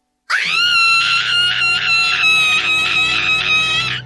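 Sandy Cheeks, the cartoon squirrel, lets out one long, loud scream in a female voice. It starts just after a moment of silence and holds at a steady high pitch with a rapid wavering pulse. It is a scream of shock at finding herself stripped of her fur.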